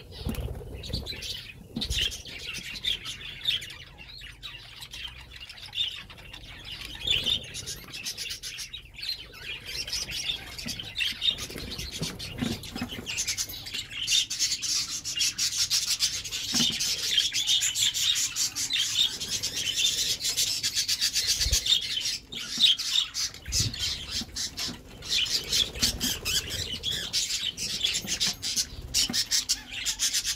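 A flock of budgerigars chattering and warbling without a break, with wings flapping as birds fly about. The chatter is busiest through the middle.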